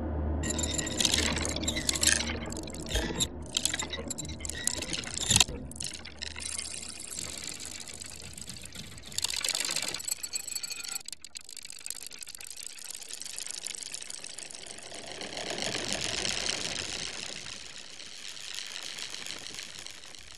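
Electroacoustic music: textures of hiss-like noise over a low drone. In the first few seconds the noise is chopped into stuttering bursts with a sharp accent, then a burst of noise comes about halfway, the drone drops out, and a wash of high hiss swells and fades near the end.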